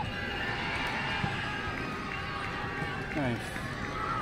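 Distant voices of children and spectators calling out around an outdoor football pitch, over a steady background of outdoor noise. One short call glides down about three seconds in.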